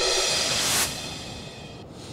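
TV news "LIVE" graphic stinger: a swelling whoosh with a bright synthesized chord that drops off just under a second in, then fades away.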